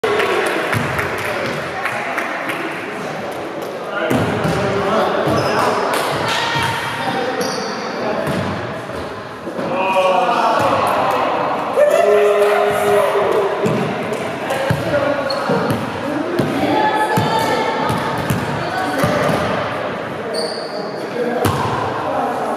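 Indoor volleyball game in a large echoing gym: repeated thuds of the ball being struck and bouncing on the wooden floor, players' voices calling out throughout, and a few short high sneaker squeaks.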